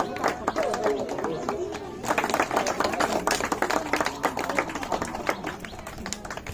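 A small group clapping by hand, uneven claps that come thicker from about two seconds in, over several people talking at once.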